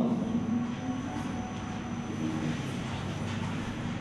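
Steady low background rumble of room noise, with a faint steady high whine above it.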